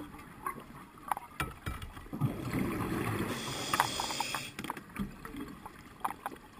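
Underwater sound of a scuba diver breathing through a regulator: a rush of bubbling and hiss starts about two seconds in and lasts about two and a half seconds, with scattered small clicks and pops around it.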